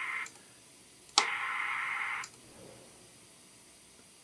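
President Grant CB radio receiver hiss from its speaker, switched on and off as front-panel buttons are pressed. The hiss cuts out just after the start, comes back with a sharp click about a second in, and cuts out again about a second later. He is trying the Local/DX setting, which he takes to be a noise blanker for local reception.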